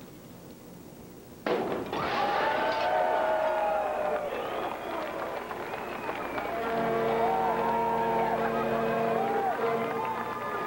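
About a second and a half in, a sudden crash as a christening bottle smashes against a steamboat's bow, followed by a crowd cheering. Near the end, several boat horns sound together in a steady chord over the cheering.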